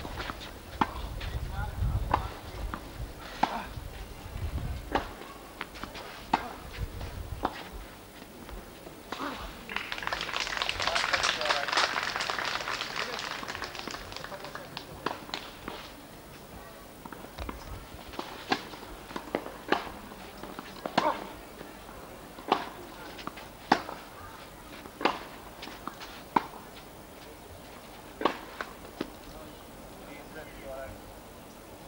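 Tennis balls being struck with rackets and bouncing on the court during rallies: sharp knocks at irregular intervals, about one a second in the busier stretches. A swell of hazy noise rises and fades about ten to fourteen seconds in.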